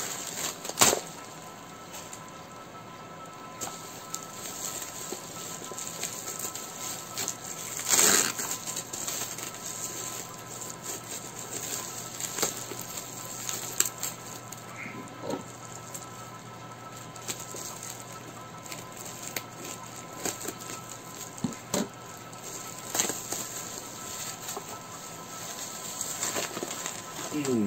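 A cardboard box and its packing material being handled and pulled apart: irregular rustling and crinkling with a few louder sharp crackles, the strongest about a second in and about eight seconds in.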